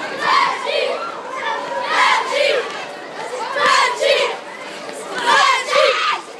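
A group of children chanting and shouting together in a repeated two-shout pattern, like a football supporters' chant, loud and lively.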